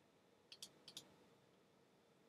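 Faint computer mouse clicks: four short clicks in two quick pairs, about half a second to a second in, against near silence.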